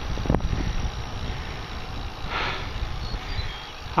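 Wind rushing over the microphone and low road rumble from a bicycle being ridden along a paved road, with one sharp click about a third of a second in.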